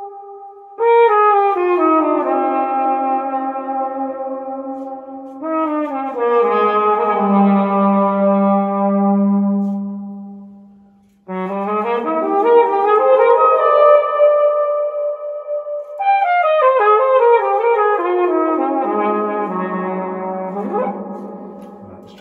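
Plastic pTrumpet, fitted with a silent-brass mute mic, played through a reverb pedal and a guitar amp and cab. It plays melodic phrases with a long reverb wash. A held low note fades out about ten seconds in, playing resumes, and a descending run fades away near the end.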